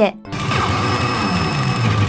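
Pachinko machine sound effect: a loud, dense rush of noise with a low tone sliding downward, starting about a quarter second in.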